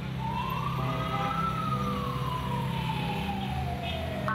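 Street traffic drone with a siren wailing over it, one long glide that rises for about a second and then falls slowly in pitch.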